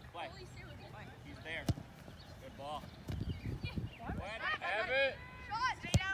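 Distant shouting voices on a soccer field, with a sharp kick of the soccer ball just before the end and a fainter ball strike about a second and a half in.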